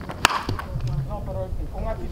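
Wooden baseball bat hitting a pitched ball: one sharp crack about a quarter second in.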